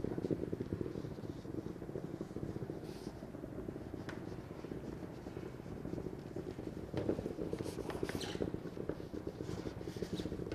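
Handheld garment steamer running against a jacket, a low, fast-pulsing buzz as it puts out steam, with some fabric rustling about seven seconds in.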